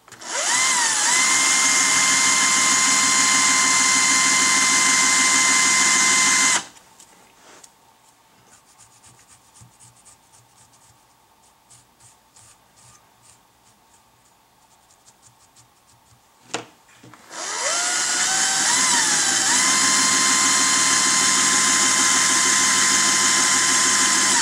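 An electric hand drill spins up and runs steadily for about six seconds, twisting the wire of a dubbing brush tighter. It stops, and a run of faint scratches follows as the fur fibers are brushed out. After a click, the drill runs again, its whine climbing in steps before it holds steady.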